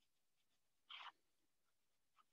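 Near silence, with one faint, brief scratch about a second in from a chef's knife cutting around the edge of a pita on a plastic cutting board.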